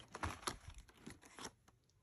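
Faint paper rustling with a few soft clicks as a page of a spiral-bound picture-symbol board is handled and turned, dying away about a second and a half in.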